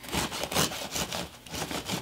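A serrated bread knife sawing back and forth through the crust of a freshly baked loaf of white bread on a wooden cutting board, in a quick run of short strokes, about four or five a second.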